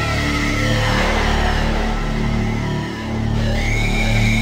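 Live synthesizer keyboard intro: held low notes under sustained high tones, with a sweeping wash about a second in and a high lead tone that slides up and holds near the end.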